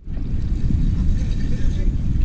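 Wind buffeting the camera microphone: a steady low rumble with a fainter hiss above it.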